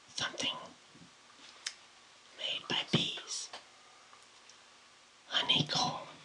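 A man whispering in three short phrases, with quiet pauses between.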